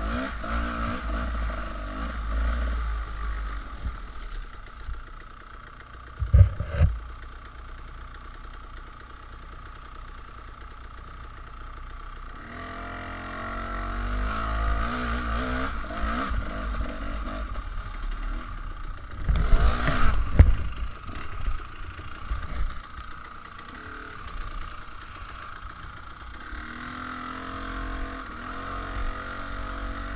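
Dirt bike engine revving up and down on a rocky singletrack climb. Loud clattering knocks about six seconds in and again around twenty seconds in, as the bike goes over rocks.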